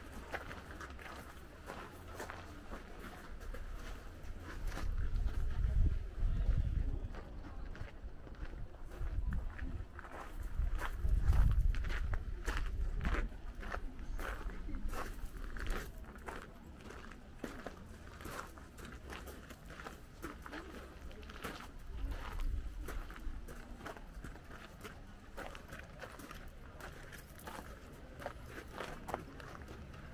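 Footsteps of a person walking, with faint voices of people in the background. Low rumbling swells about five, eleven and twenty-two seconds in, the loudest of them around eleven seconds, like wind on the microphone.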